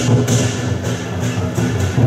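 Loud dragon-dance procession music: a steady drum-driven beat with repeated cymbal crashes, the crashes thinning out in the middle.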